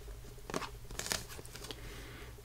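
A small cardboard box handled and turned over in the hands, with a few faint scrapes and taps of fingers on the card.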